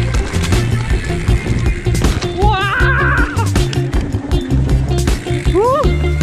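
Background music with a steady bass beat. About halfway through, a wavering, voice-like pitched sound rises over it, and a short rising glide comes near the end.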